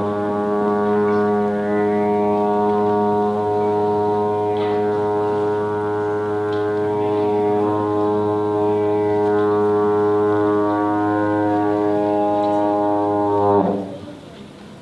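Trombone holding one long, low, steady note for about fourteen seconds, swelling slightly just before it breaks off near the end.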